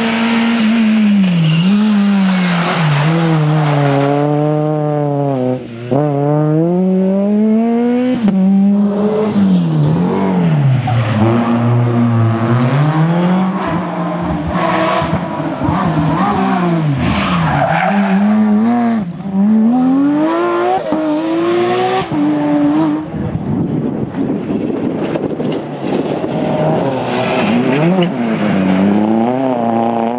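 Rally car engines at full throttle, several cars in turn: the revs climb and drop again and again with gear changes and lifts off the throttle as each car comes past.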